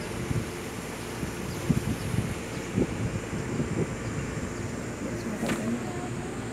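A boat's motor running with a steady drone while wind rumbles on the microphone; a sharp click comes near the end.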